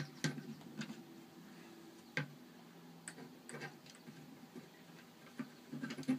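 Scattered light clicks and taps of plastic Lego bricks being handled and pressed onto a Lego model, the sharpest about two seconds in.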